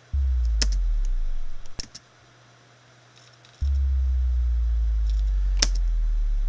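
Synthesized bass drop: a sine wave from a tone-generator plugin, given a light tube overdrive, sliding slowly down in pitch. It plays twice, first briefly for about a second and a half, then a longer one that starts a little past the middle and runs on.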